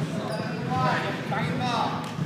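Basketball bouncing on a gym's hardwood floor, with players' voices calling out across the court.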